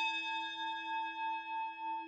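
A struck chime with a singing-bowl-like tone rings out and slowly fades, its loudness gently wavering. It serves as the transition sting into a sponsor segment.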